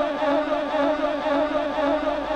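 A man's voice holding a long, wavering chanted note over a loudspeaker system, settling into a steadier drone.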